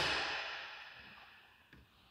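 The fading tail of a thud from the trunk's carpeted cargo floor cover dropping shut over the spare tire, dying away over about a second and a half into silence.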